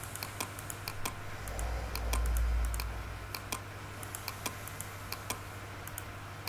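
Irregular clicking of computer keys and mouse buttons, several clicks a second, over a steady low hum. A low rumble comes in about one and a half seconds in and lasts a little over a second.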